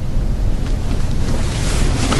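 A loud rushing noise over a low rumble, swelling toward the end.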